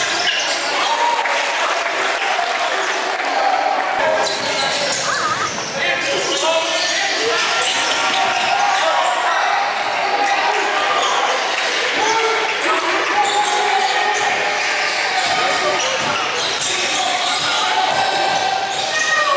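Live game sound from an indoor basketball court: the ball bouncing on the hardwood, with players and onlookers calling out. The big gym makes it all echo.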